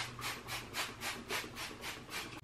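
Trigger spray bottle of multi-surface cleaner being squeezed over and over, a quick run of short hissing squirts at about four a second.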